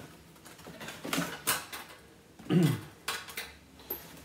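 Cardboard box flaps being opened out and folded, with short scraping and rustling strokes. About two and a half seconds in comes the loudest sound, short and falling in pitch.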